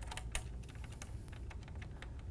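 Thumb screw being loosened by hand on a children's trike frame: a few faint, irregular small clicks.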